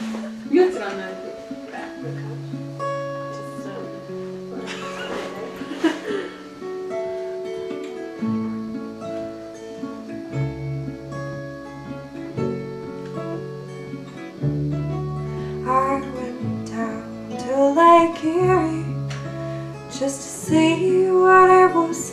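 Band playing the instrumental intro of a slow song: guitar and keyboard holding chords, with the bass guitar coming in about eight to ten seconds in. Voices come in over the last few seconds.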